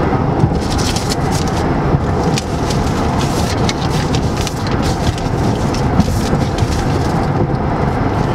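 Steady road and engine rumble inside a moving car's cabin at speed, with frequent light ticks and crackles over it.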